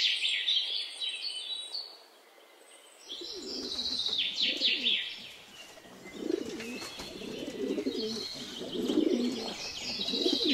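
Domestic pigeons cooing in low, repeated bursts from about three seconds in, with high bird chirping over them. The chirping is loudest at the very start, and there is a brief lull around two seconds.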